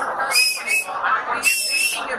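Two shrill, steady whistles from the crowd, each about half a second long, the second slightly higher, over crowd chatter.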